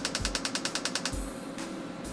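Neurosoft transcranial magnetic stimulator coil clicking in a 10 Hz repetitive train, about ten sharp clicks a second. The clicks stop about a second in as the 40-pulse train ends and the pause between trains begins.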